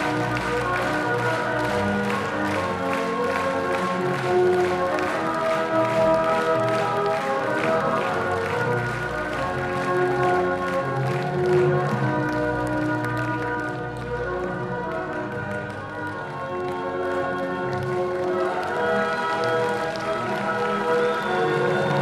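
Music with held chords and melody lines, with applause and clapping from the choir and audience over it that thins out about halfway through.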